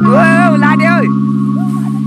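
Background music: a sustained organ-like keyboard chord, with a voice singing a short wavering phrase over it in the first second.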